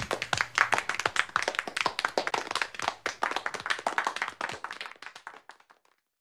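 Applause from a small audience: many hands clapping, thinning out and fading away toward the end.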